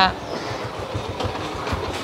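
Low, uneven rumbling background noise with rapid faint knocks and no clear tone.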